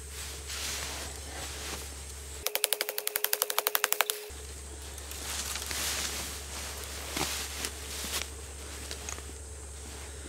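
A carbon-steel chopper blade chopping into a small elm trunk in a quick, even run of about fourteen sharp strikes, roughly eight a second, lasting under two seconds. Grass rustling and a couple of faint knocks follow.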